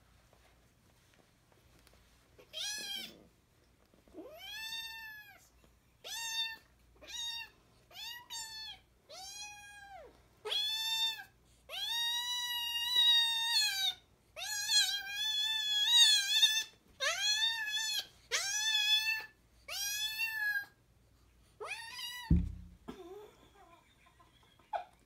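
Kitten meowing over and over while pinned by a bigger cat in play-wrestling: a string of about fifteen high cries, each rising and falling in pitch, longer and louder in the middle run. A dull thump near the end.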